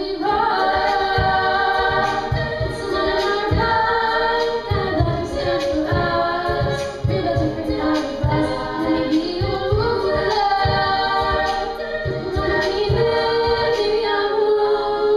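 Female a cappella group singing in close harmony, sustained chords under a lead voice, with a regular low beat underneath.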